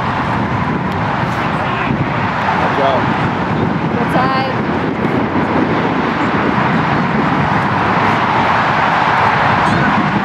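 Open-air soccer field ambience: a steady rushing background noise, with players' distant shouts on the pitch and one short call about four seconds in.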